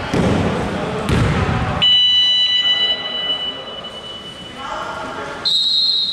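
Player voices and court noise, then a referee's whistle sounds one steady shrill note for about a second, and a second, higher whistle blast comes near the end, stopping play after a foul for a time-out.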